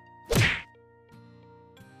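A single short whack-like transition sound effect about a third of a second in, over soft background music with steady held tones.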